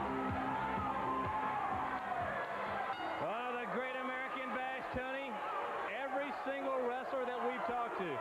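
Wrestler's ring-entrance music playing and then cutting off about two and a half seconds in, followed by a man talking over the arena.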